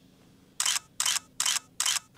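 Camera shutter sound, four quick clicks in even succession about two and a half a second, beginning just over half a second in.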